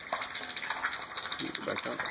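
Mallard drake dabbling in a metal water bowl: a rapid run of small wet clicks as his bill works the water.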